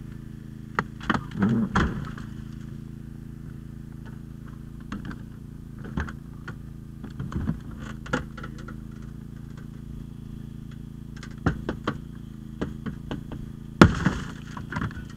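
Steady hum of a running hydraulic power unit under scattered metallic clanks and knocks as a Holmatro hydraulic spreader is worked into a car's door hinge area. There is a cluster of knocks in the first two seconds, a few through the middle, several more near the end, and the loudest sharp bang comes just before the end.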